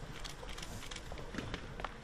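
Scattered light clicks and taps, irregular and faint, over a low steady room background.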